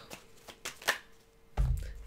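Tarot cards being handled and drawn from the deck: a few short, sharp card clicks and snaps, then a soft low thump near the end.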